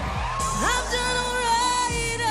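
A woman singing a pop song over backing music: her voice slides up about half a second in and then holds one long note.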